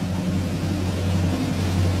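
A steady low rumbling drone with a hiss over it, holding one pitch and one level, then cutting off as the talk resumes. It is a suspense sound effect played before a winner is announced.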